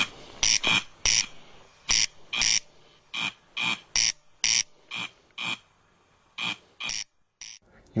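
Corncrake calling: a series of short dry rasps, often in pairs, about two a second, that stop shortly before the end.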